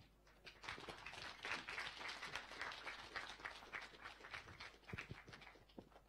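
Faint audience applause that builds about half a second in and thins out near the end to a few last claps.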